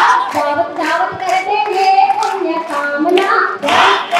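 A woman singing a song through a microphone and loudspeaker, with held, wavering notes, while hands clap in time at about two claps a second.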